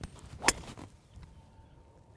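A driver striking a golf ball off a tee: one sharp crack about half a second in.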